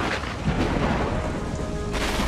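Steady rain with a low rumble of thunder, a recorded effect opening the background music track; faint musical tones begin to come in near the end.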